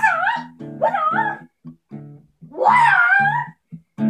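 Guitar music with a plucked bass line repeating short low notes in a steady rhythm. Over it come three high, wavering cries that bend up and down in pitch, the third one, near the end, the longest and loudest.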